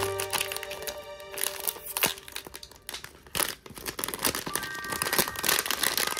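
Plastic packaging being crinkled and torn open by hand in a run of irregular crackles. Background music plays under it, fading at the start and coming back about two-thirds of the way in.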